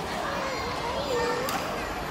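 Children's voices and chatter from a crowd, with no music, and a single sharp click about one and a half seconds in.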